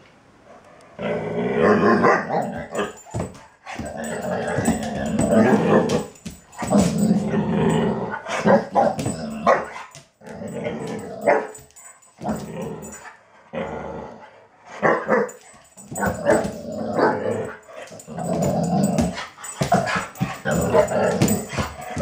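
Young dog play-growling and barking in repeated bursts during a play fight with a cat.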